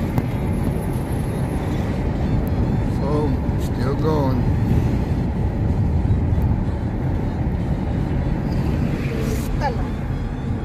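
Steady road and wind noise from a car driving at highway speed, heard from inside the cabin. A couple of brief voice sounds come about three to four seconds in and again near the end.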